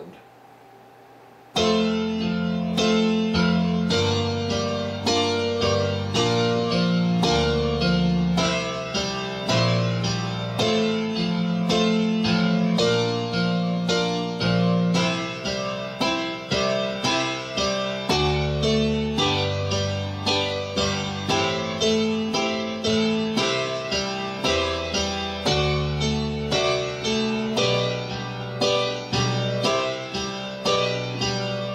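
Digital keyboard with a piano sound playing a slow passage of repeated octave chords in the right hand over octave bass notes in the left, starting on F. The steady chord strikes, a little under two a second, begin about a second and a half in.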